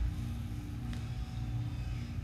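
A pause in speech filled by a low, steady background hum (room tone), with a faint tick about a second in.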